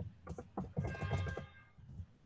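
Computer keyboard typing: a quick run of key clicks. A short pitched musical tone sounds for about half a second near the middle.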